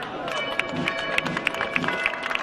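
A festival crowd with music starting up about a third of a second in, made of held, steady notes, under a scatter of sharp cracks.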